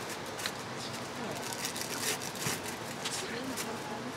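Indistinct background talk with scattered light clicks and clatter over a steady hiss.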